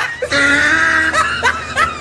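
Laughter: one high held note, then short laughs about three times a second.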